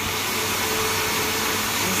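Kenwood countertop blender running at a steady speed, blending banana, apple pear and a little water into a smooth liquid. Its motor gives an even whir with a steady tone that does not change.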